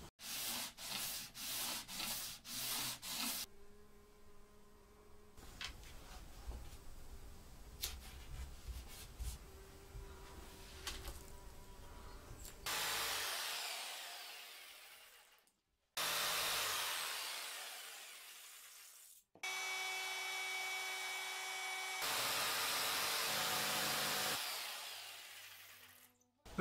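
Woodworking on walnut guitar-body wood: a run of about six rhythmic strokes, then quieter rubbing, then several separate runs of a handheld power tool cutting, each ending as the tool fades away.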